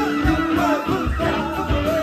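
Live band music with drums, electric bass and horns (trumpet and saxophone), with voices singing over it.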